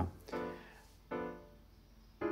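iReal Pro's built-in piano playback comping jazz chord voicings: two short chords a little under a second apart, each dying away.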